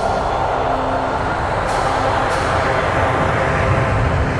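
Intro soundtrack swelling into a dense, low rumble under held steady tones, with a few brief high swishes passing through.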